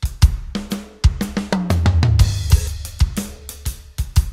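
Sampled acoustic rock drum kit from the Hertz Drums virtual-drum plugin playing a groove of kick, hi-hat, cymbals and snare. The snare hits are soft and quiet because the snare's velocity Dynamic control is turned down, so even its hard hits play from the softest sample groups.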